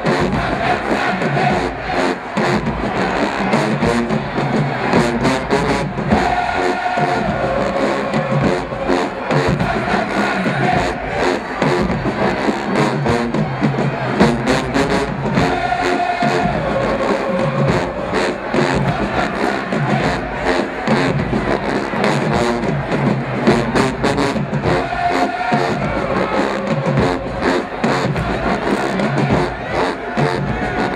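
HBCU marching band playing in the stands: brass and sousaphones holding loud sustained notes over a steady, driving percussion beat.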